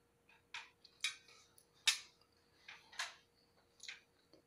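Someone chewing food close to the microphone: five short crackly mouth sounds, about one a second.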